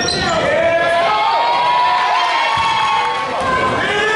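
A basketball dribbling on a hardwood gym floor under overlapping shouts and cheers from spectators and young players.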